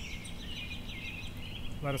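Songbirds singing, a run of quick repeated chirps in the first second, over a steady low background noise.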